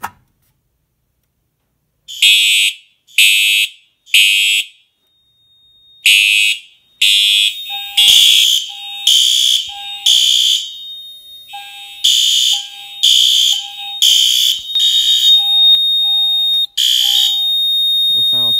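Fire alarm horns sound after a Pyrotronics MS-5 manual pull station is pulled. About two seconds in they start with three blasts a second apart and a pause, the temporal-three evacuation pattern. More than one appliance then sounds together, with a shorter, lower beep repeating between the loud horn blasts and a thin steady high tone behind them.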